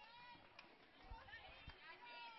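Near silence on a ballfield: faint distant voices calling out, with a couple of soft thuds in the second half.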